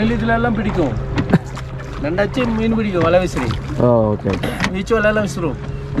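A person talking in short phrases while a wooden rowboat is rowed with a pair of oars, over a steady low rumble.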